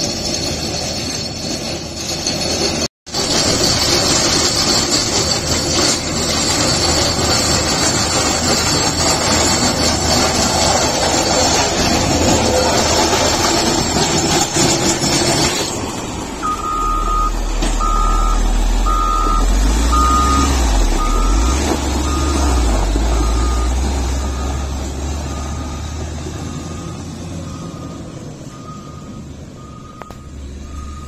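Caterpillar 120-series motor grader working a gravel road: its diesel engine runs under load and the blade scrapes gravel and stones, with a brief dropout about three seconds in. From about halfway the engine runs loud and low close by, and its reversing alarm beeps steadily about once a second.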